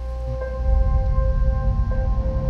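Film trailer score: steady, ringing bell-like tones held over a low rumbling drone that swells about half a second in.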